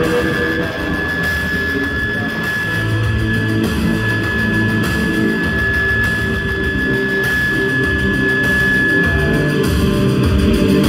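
Live rock band playing through a club PA: electric guitar and keyboards over drums, with one high note held until just before the end.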